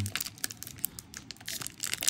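Foil Pokémon booster pack wrapper crinkling and crackling as it is torn open by hand, a quick irregular run of small crackles.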